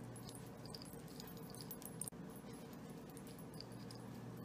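Faint clicks and rustle of a crochet hook working through yarn, with one slightly louder tap about two seconds in, over a low steady hum.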